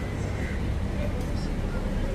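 Busy city street ambience: a steady low hum of idling and passing car engines, with indistinct voices of passersby.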